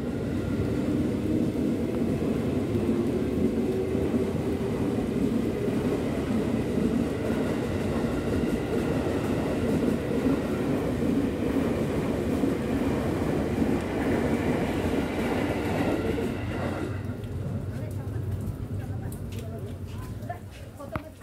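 A steady mechanical rumble with faint steady tones and some voices underneath. It drops away sharply about seventeen seconds in.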